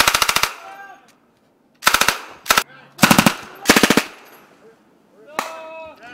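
Automatic gunfire in short rapid bursts, about a dozen shots a second, five bursts with a single shot near the end.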